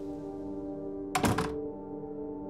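A door shutting a little over a second in, heard as a quick cluster of knocks over a held, sustained chord of film score.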